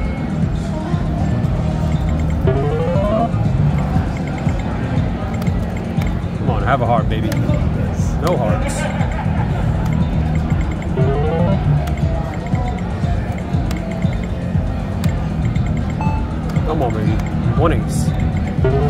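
Video poker machine sound effects: short rising electronic tones every few seconds as hands are dealt and drawn, over a loud, steady low casino din.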